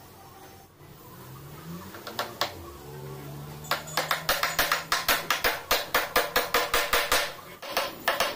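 Hammer tapping a small nail into a plywood cabinet: two taps, then a fast, even run of light taps, about five or six a second, for several seconds.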